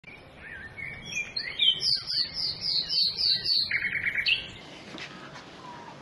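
A songbird singing a varied phrase of high chirps, with a quick run of about seven repeated notes in the middle and a short buzzy note near the end, over faint outdoor background noise.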